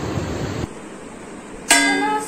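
A metal spoon strikes a brass plate (thali) once, near the end, and it rings on like a bell with many overtones.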